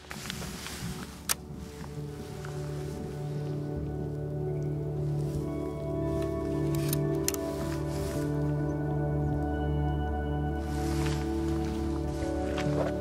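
Soft background music of slow, sustained chords, fading in over the first few seconds and then holding steady, with a single sharp click just over a second in.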